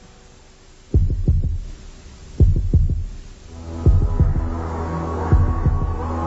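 Soundtrack sound design: after a quiet first second, deep heartbeat-like thuds, often in close pairs, joined about three and a half seconds in by a low sustained droning chord.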